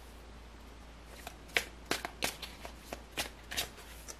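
Tarot cards being shuffled and snapped by hand: a quick run of about eight sharp card flicks and slaps starting about a second in.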